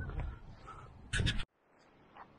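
A man's short loud shout, 'coming', over a low rumble, cut off abruptly about one and a half seconds in.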